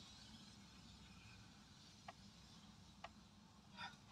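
Near silence: faint room tone with two soft clicks about a second apart, the first about two seconds in.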